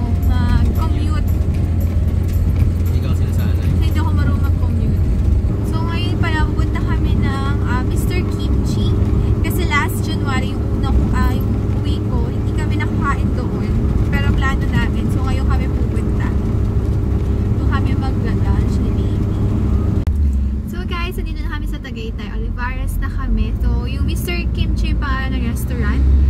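Steady low rumble of road and engine noise inside a moving car's cabin, under people talking.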